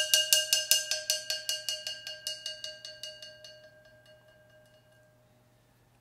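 Ceramic flowerpot struck with a yarn mallet in a rapid even roll, about seven strokes a second, ringing at a clear pitch with higher overtones. The roll grows gradually softer and dies away to nothing about five seconds in.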